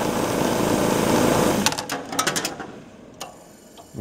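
Waste oil burner running with a steady motor hum, then switched off a little under two seconds in, the hum dying away. As the oil solenoid coil loses current and releases the screwdriver it was holding, a quick clatter of light metallic clicks follows, and one more click near the end.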